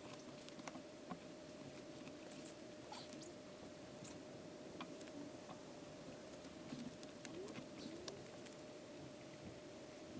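Faint squeaks, scrapes and small clicks of a 63 mm PVC pipe being worked down through a Vaseline-greased rubber uniseal in the lid of a plastic drum, over a faint steady hum.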